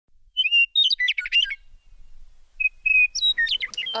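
A songbird chirping and trilling in two quick phrases of whistled notes, with a short pause between them.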